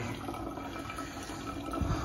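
Water running steadily from a wall-mounted water purifier's tap into a plastic bottle.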